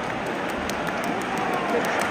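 Football stadium crowd: a steady hubbub of thousands of fans' voices blending together, with nearby fans calling out over it.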